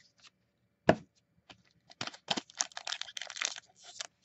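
A single knock on the tabletop about a second in, then about two seconds of crackling and crinkling from a foil booster-pack wrapper being picked up and handled.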